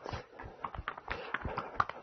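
A horse's hooves clip-clopping at a walk on a tarmac lane, mixed with a runner's footsteps, making irregular sharp taps several times a second.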